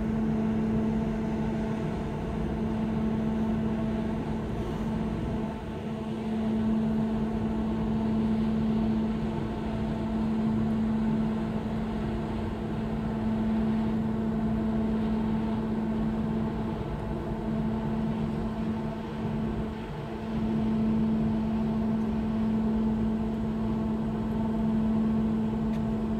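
Steady machinery hum with a strong, constant low tone and a rumble beneath, typical of a large ship's onboard engines and ventilation heard from the deck. It swells and dips slightly but never changes pitch.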